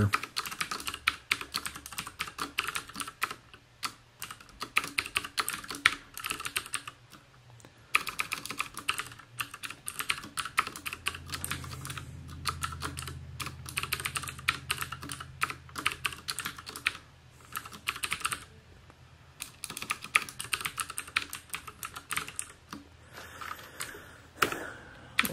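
Typing on a computer keyboard: quick runs of keystrokes broken by short pauses of about a second.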